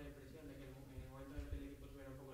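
Faint speech from a voice away from the microphone.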